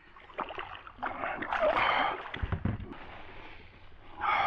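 Water splashing as a hooked smallmouth bass is lifted by hand out of the river into a kayak, loudest from about one to two and a half seconds in, followed by a couple of dull thumps.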